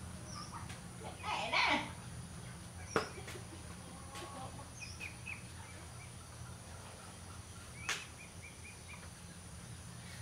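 Outdoor ambience of birds: a louder call lasting under a second about a second in, then short chirps around the middle and a quick run of chirps near the end. Two sharp clicks are heard, and a low steady hum runs underneath.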